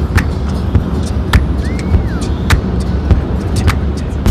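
Steady low road rumble of a taxi driving at speed, heard from inside the cabin. Several sharp clicks come at irregular intervals, and a brief rising-and-falling squeak sounds near the middle.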